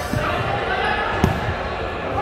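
A futsal ball struck once on a hardwood court about a second in, ringing in a large gym hall, with players' voices in the background.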